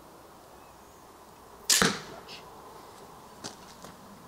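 A single sharp crack of an arrow being shot from a bow, a little under two seconds in, followed by a few faint clicks.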